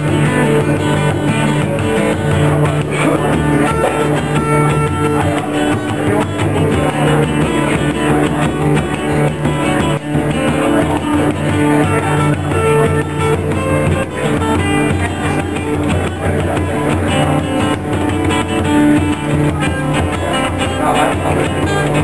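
A jig played on guitar, with a bodhrán (Irish frame drum) beating along.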